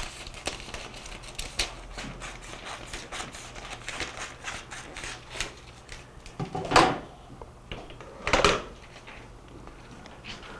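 Handling of foil-backed mylar film and lifter equipment: a run of small clicks and rustles, with two louder handling noises near the end, under two seconds apart.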